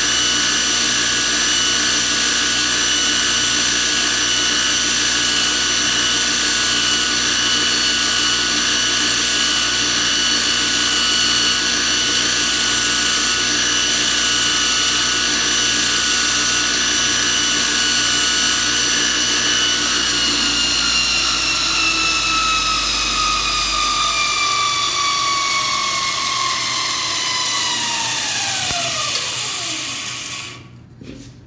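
JET bench grinder running a Multitool belt-sander attachment with a 120-grit zirconia belt, grinding the cut end of a small steel socket-head bolt to a point. The motor's steady whine holds until about two-thirds of the way through, then drops steadily in pitch as the machine coasts to a stop near the end.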